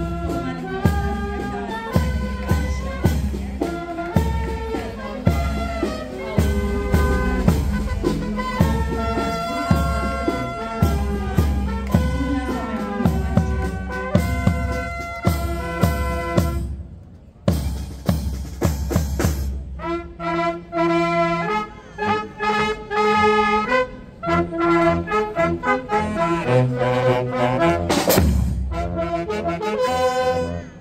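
Military brass band playing a march: trumpets, saxophones and tubas over a steady bass drum beat. The music breaks off briefly a little past halfway, then the brass plays on.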